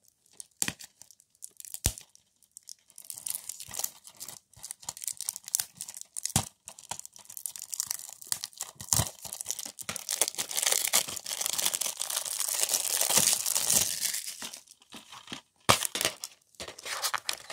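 Plastic shrink-wrap on a DVD case crackling and tearing as the case is worked open by hand. A few sharp clicks come in the first seconds, and the crackling is busiest in the later part.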